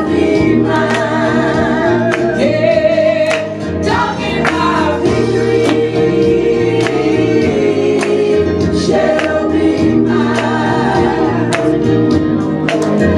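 Gospel song sung by a small congregation, voices wavering with vibrato over a bass line, with steady percussive strikes keeping the beat.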